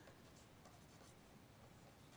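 Faint scratching of a pen writing on paper.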